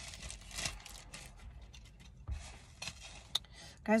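Rustling and a scatter of light clicks from handling a pair of sunglasses as it is picked up, with one sharper click near the end.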